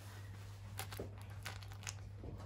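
A miniature dachshund puppy rustling and scuffling in a soft fleece blanket on her bed as she noses it over a toy hedgehog to bury it, with several short, sharper rustles in the second half.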